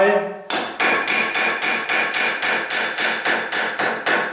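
A tinsmith's flaring hammer (Schweifhammer) striking the edge of a zinc-sheet pot over an angled steel stake, flaring the edge over. The blows come quickly and evenly, about four a second, each with a bright metallic ring, starting about half a second in.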